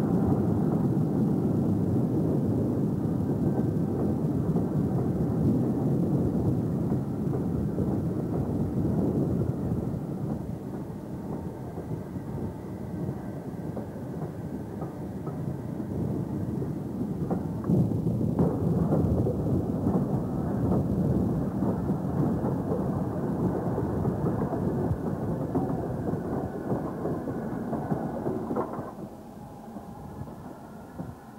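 Steam train running: a low, steady rumble that eases off for a few seconds in the middle, picks up again, and fades near the end.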